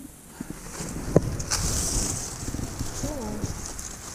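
Dry corn leaves and stalks rustling and brushing as someone pushes through standing field corn, with one sharp snap about a second in.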